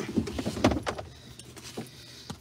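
A quick run of small clicks and knocks inside a parked car, thickest in the first second, then quieter scattered handling noises.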